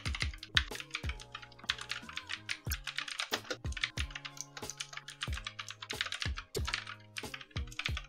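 Typing on a computer keyboard: a steady run of irregular keystrokes, over soft background music.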